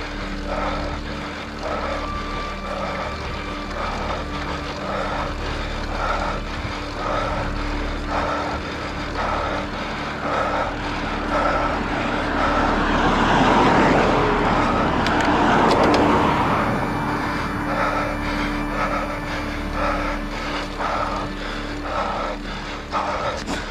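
Steady road and wind noise from a moving road bicycle, with a soft pulse repeating about every two-thirds of a second. A car approaches and passes around the middle, swelling to the loudest point of the stretch and then fading.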